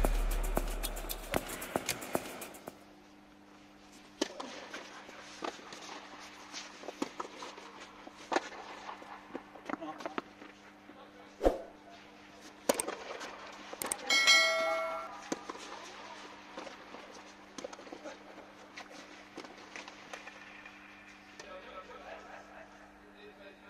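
Tennis ball struck by rackets on an indoor clay court, sharp pops that echo in the dome, the loudest about halfway through, over a steady low hum. Music fades out in the first couple of seconds, and a short pitched call comes about two-thirds of the way in.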